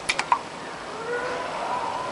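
A few quick light clicks of kitchenware being handled in the first moment, then only a faint steady tone over quiet room noise.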